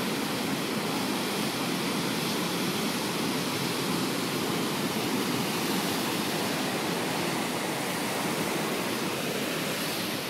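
Heavy surf breaking and white water surging over and around an ocean rock pool, heard as a steady, even rush of water.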